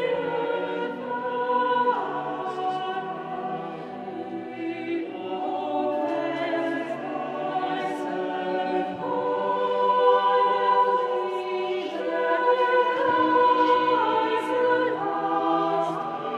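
Small mixed choir of men's and women's voices singing, holding sustained chords that shift every few seconds.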